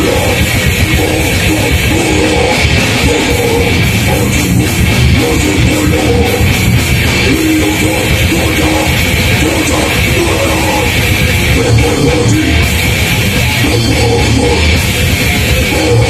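Heavy metal band playing live: distorted electric guitar riffing over a drum kit and bass, with a vocalist singing into a microphone, loud and continuous.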